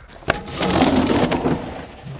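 Roller shutter on a Magirus fire engine's equipment compartment being opened: a click as it is released, then about a second of rolling, clattering noise as the slatted shutter runs up.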